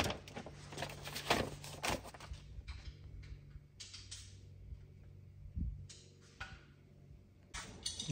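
Paper instruction sheets being handled and their pages turned, rustling in a few short bursts, over a faint low hum.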